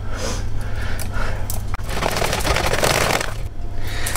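Wire balloon whisk scraping and beating thick brownie batter in a plastic bowl. After a sudden break about two seconds in, it gives way to a dense crackling rustle of plastic packaging being handled.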